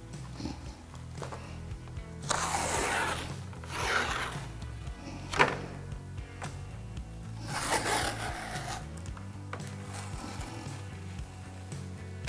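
Strips of tape being peeled off a sheet of plexiglass in about four separate tearing pulls, one of them short and sharp, over soft background music.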